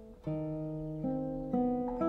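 Solo classical guitar built by Jakob Lebisch, fingerpicked: a ringing chord dies away, then a new chord is plucked about a quarter second in and further notes follow about every half second, climbing in pitch.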